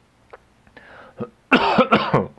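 A man clears his throat with a short, loud cough about one and a half seconds in, after a few faint clicks.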